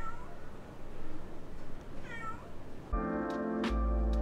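Two short animal calls about two seconds apart, the first falling in pitch. About three seconds in, music starts, with a few sharp knife chops on a cutting board over it.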